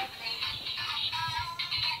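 Battery-powered toy doll playing a tinny, high-pitched electronic tune with a synthetic singing voice.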